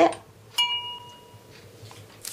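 A single bright chime about half a second in, ringing for about a second as it fades.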